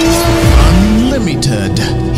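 Title-sequence theme music: a sudden loud hit opens it, followed by a held tone with sliding pitch sweeps and sharp swishing accents.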